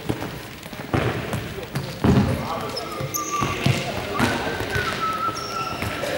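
A ball bouncing several times on a sports-hall floor, with footsteps, a few high squeaks and background voices echoing in the large hall.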